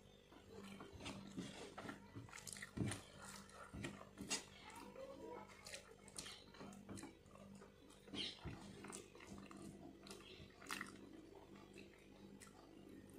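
A person eating rice by hand: close chewing and lip-smacking mouth noises with irregular short clicks as fingers mix food on the plate. A faint steady hum runs underneath.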